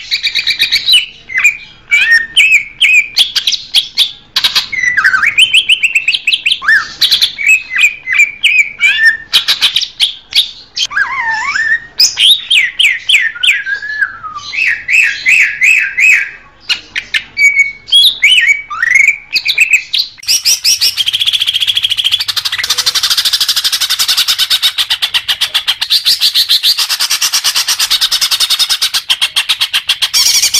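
Green leafbird (cucak ijo) song: loud, varied whistled phrases and rapid chattering trills, turning into a dense, unbroken chatter about two-thirds of the way in. This is the kind of recording played to condition caged birds and as a lure for trapping.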